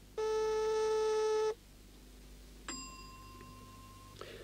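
Lift call-button buzzer sounding as the button is pressed: a steady electric buzz for about a second and a half. About a second later comes a single bell ding that rings on and slowly fades, the signal that the lift has arrived.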